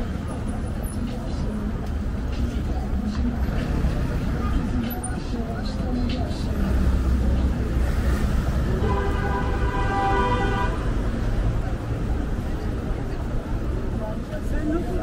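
Road traffic running steadily, with a vehicle horn sounding one long honk of about two seconds about nine seconds in.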